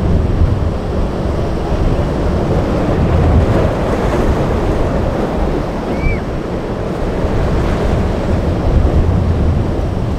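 Rough surf breaking and rushing, with wind buffeting the microphone into a heavy low rumble, loud and steady throughout. A brief high chirp stands out about six seconds in.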